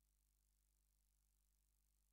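Near silence: a faint, steady low hum and hiss on a dead audio feed.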